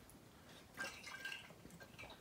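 Faint sounds of a man drinking from a large water bottle tipped up: water moving in the bottle and going down, in a few small sounds about a second in.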